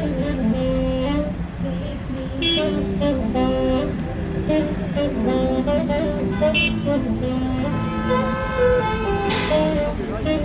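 Street music, a slow melody of held notes, over the steady low rumble of idling traffic. Two short car-horn toots come about 2.5 and 6.5 seconds in, and a brief hiss sounds near the end.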